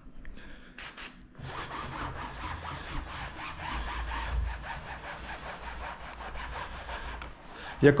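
Two short hisses from a hand pump sprayer about a second in, then a microfibre mitt rubbing back and forth over upholstery fabric, working the pre-spray into a bed headboard.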